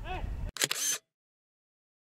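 Outdoor field sound with voices calling over low wind rumble, cut off abruptly about half a second in by a short, sharp burst of noise, then dead digital silence: an edit gap in the audio track.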